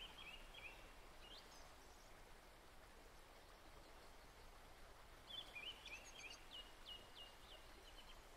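Faint birdsong over near silence: a short run of chirps at the very start and another longer phrase of quick chirps and rising strokes about five to seven seconds in.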